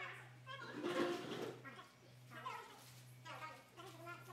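Several people talking indistinctly over a steady low hum; the loudest voice comes about a second in.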